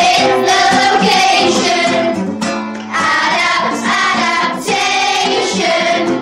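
A song: voices singing over instrumental backing, with a brief lull about two and a half seconds in.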